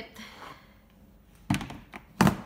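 A single sharp thunk about one and a half seconds in, from the clear plastic storage bin being handled as the nebulizer and hose are put away in it, after a little faint handling noise.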